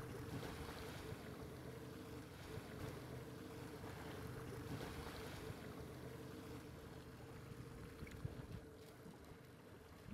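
Faint boat ambience on open water: a steady low engine hum with wind and water noise, fading over the last couple of seconds.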